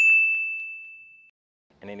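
A sparkle 'ding' sound effect: one bright, high ping that rings out and fades away over about a second.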